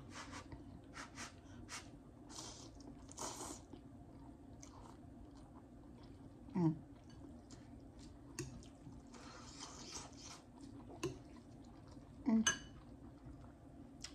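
A person eating hot instant ramen noodles: soft chewing and slurping with small clicks of mouth and fork, and blowing on the steaming noodles. Two short vocal sounds break in, about six and a half seconds and twelve and a half seconds in.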